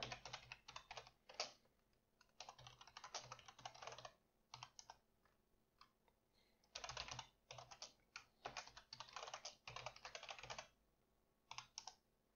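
Faint typing on a computer keyboard: quick runs of keystrokes broken by short pauses.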